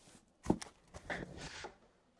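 A cardboard shipping case being handled and lifted off a table: one dull knock about half a second in, then a soft scrape and rustle of cardboard.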